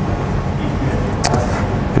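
Steady low mechanical hum, with one brief sharp click a little past the middle.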